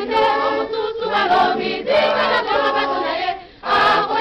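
Choir singing a Lingala gospel song, with a brief pause near the end.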